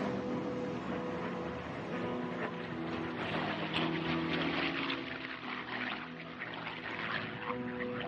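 A P-51 Mustang's Packard Merlin V-12 engine and propeller on a low, fast pass along the runway. The engine is loudest around the middle of the pass, with steady held tones underneath.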